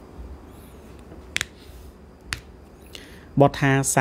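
Two short, sharp clicks about a second apart over quiet room tone, then a man's voice starts speaking near the end.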